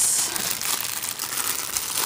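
Clear plastic bag crinkling steadily as it is handled and pulled at to get the item out, loudest right at the start.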